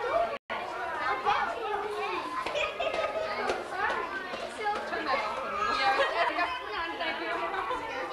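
Many people talking at once, a hubbub of overlapping voices with no single speaker standing out. The sound cuts out completely for an instant about half a second in.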